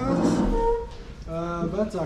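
A man speaking, with a short pause about a second in.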